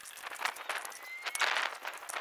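A pipe wrench clicking and scraping on a brass gas shutoff valve as it is turned tight onto a black iron pipe: a quick run of light clicks, with a denser scrape about one and a half seconds in.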